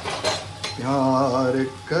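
A spatula clattering and scraping against a kadhai as vegetables are stirred, in the first half second or so. Then a man's voice is held for about a second without clear words.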